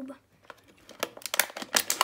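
Clear plastic blister packaging crackling and clicking as hands work at it to free a stuck die-cast model car. The sharp crackles come in a quick run from about half a second in.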